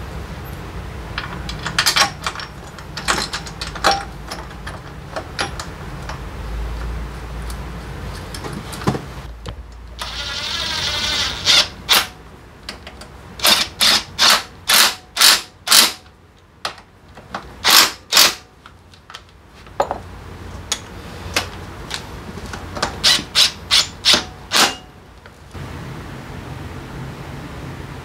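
Keyang cordless impact wrench on a rear brake caliper bolt: the motor whirs up, then hammers in short bursts, about two or three a second, with a second run of bursts a few seconds later. Light metal clicks of hand work on the caliper come before.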